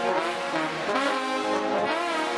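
Marching-band trombone section playing loudly in unison, with notes sliding in pitch about halfway through and again near the end.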